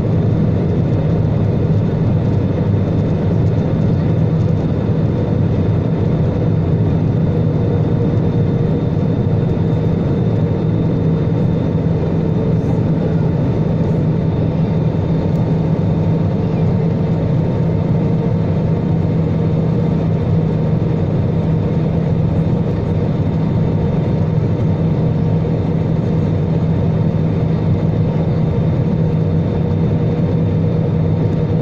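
Steady cabin noise of a Jetstar Asia Airbus A320 on its descent: a low rumble of jet engines and airflow with faint steady hums on top, unchanged throughout.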